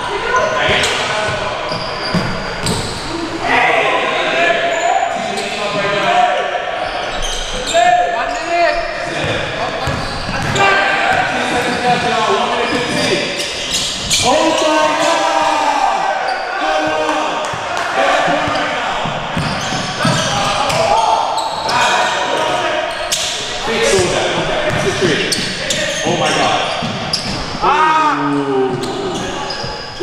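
Basketball game in a gym: a ball being dribbled and bouncing on the hardwood floor, echoing in the large hall, with players' voices calling out over it.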